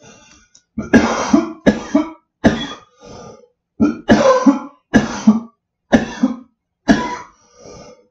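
A man coughing hard after inhaling from a cannabis vape cartridge: a faint exhale, then a fit of about eight sharp coughs, roughly one a second.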